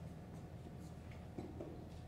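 Quiet hall room tone with a steady low electrical hum and a few faint clicks and shuffles, one small knock about one and a half seconds in.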